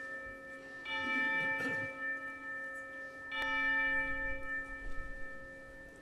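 A bell-like chime struck twice on the same note, about a second in and again about three and a half seconds in. Each strike rings on and fades slowly, over the dying ring of the one before.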